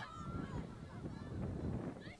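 Open-air field ambience at a soccer game: a steady low rumble with faint, short, high-pitched calls scattered through it.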